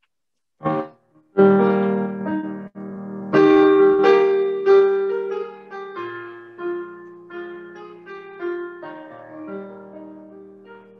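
Piano music bridge between scenes: two loud sustained chords, at about one and a half and three and a half seconds in, then a gentler melody that slowly grows quieter.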